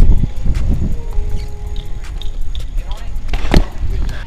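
Wind rushing over the camera microphone and bicycle tyres rolling on asphalt as the bike is ridden, with a single sharp click about three and a half seconds in.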